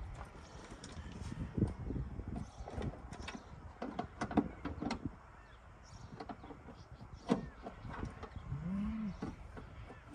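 Scattered light clicks and knocks from hands working in a car's engine bay, with no starter cranking and no engine running: the start attempt on a fresh battery gives nothing.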